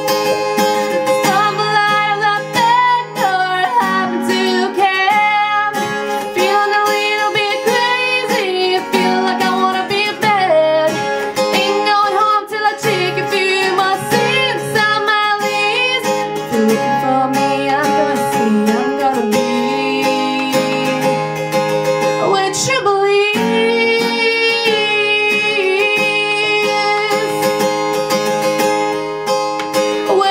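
A woman singing to her own strummed acoustic guitar.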